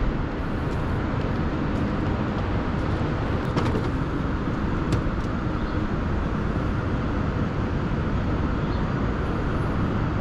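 Steady rumble of road traffic heard in the open air, with a few faint clicks about three and a half and five seconds in.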